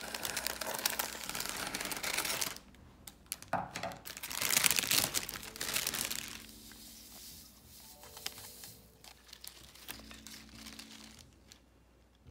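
Crinkling and tearing of a clear plastic flower sleeve as a bouquet of roses is unwrapped. It is loudest about four to six seconds in, then thins to quieter, scattered rustles.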